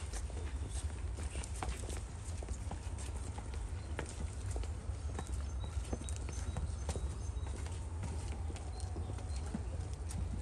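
Footsteps of several people walking on a paved path: irregular, sharp clicking steps over a steady low rumble.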